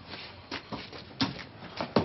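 A handful of knocks and thumps from a scuffle against a parked car, about five in all, the loudest a sharp bang at the very end.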